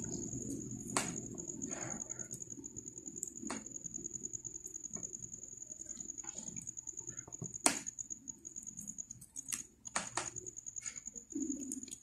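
Faint scattered clicks of faux pearl and crystal beads knocking together as fishing line is threaded through them, with a few sharper ticks spread through.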